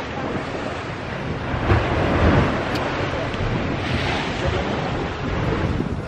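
Wind buffeting the microphone at the top of a sea cliff, over the wash of sea waves against the rocks below, swelling about two seconds in and again near four seconds.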